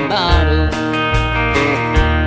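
Live country band playing: plucked guitar over a steady bass line and beat, an instrumental stretch just before the vocals come in.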